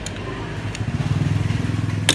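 An engine running at a steady pitch, getting louder about a second in.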